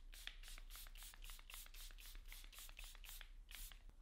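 Charlotte Tilbury Airbrush Flawless Setting Spray pumped in quick repeated squirts: a faint run of short mist hisses, about five a second.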